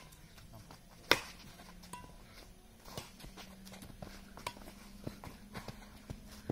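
Badminton rackets hitting a shuttlecock during a rally: one sharp, loud hit about a second in, then fainter hits every second or so.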